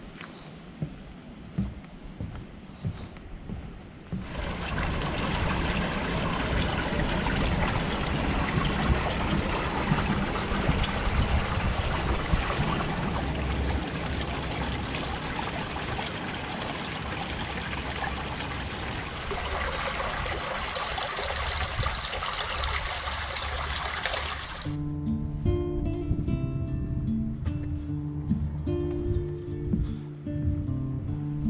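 A small rocky creek running close by, a steady rushing trickle of water, after a few soft knocks in the first seconds. Near the end the water cuts off suddenly and strummed acoustic guitar music takes over.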